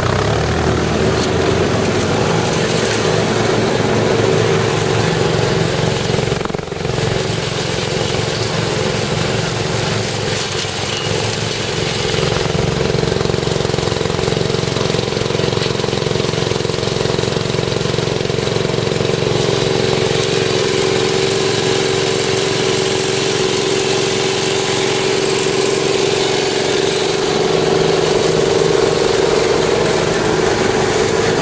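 John Deere SRX75 ride-on mower running steadily as it is driven through tall dry grass, with a brief dip in loudness about six seconds in.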